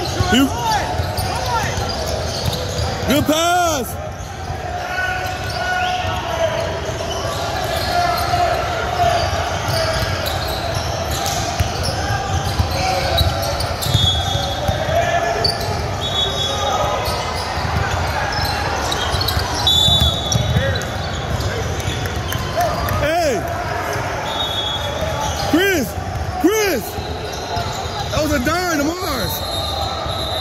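Sounds of a basketball game in a large gym: a ball dribbling on the hardwood floor, with several short sneaker squeaks and background voices from the bench and spectators.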